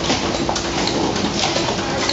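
Demtec 2016EVO potting machine running: a steady mechanical hum from its drives, with a short burst of noise about every half second as it cycles pots through filling.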